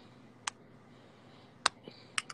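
Two sharp, short clicks about a second apart over faint room noise.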